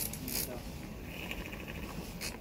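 Battery-powered handheld milk frother whirring in a glass of milk, whisking it into foam, with a brief rattle at first and then a steady high whine.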